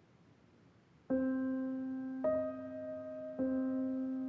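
Slow piano background music. After about a second of near silence, a sustained note or chord is struck about once a second, three times.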